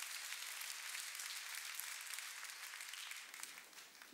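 Audience applauding, an even patter of many hands that fades away toward the end.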